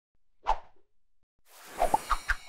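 Logo-animation sound effects: a short pop about half a second in, then a whoosh that swells and ends in two quick hits near the end.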